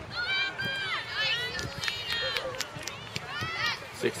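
High-pitched shouts and calls of young girls on a soccer field, with scattered short knocks and taps.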